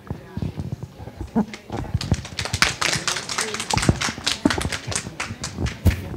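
Felt-tip marker writing on flip chart paper, a quick run of short scratchy strokes with a few soft knocks, picked up close by a handheld microphone.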